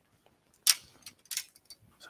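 Shimano Nasci carbon spinning rods being handled and passed from hand to hand: a few brief, soft clicks and rustles.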